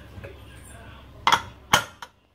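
Two sharp metallic clinks, about half a second apart, as a pressure cooker's metal whistle weight is set onto the vent pipe of the lid.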